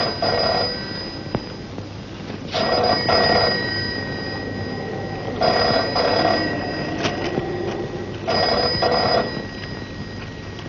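Telephone bell ringing in repeated double rings, a burst about every three seconds, four times in all.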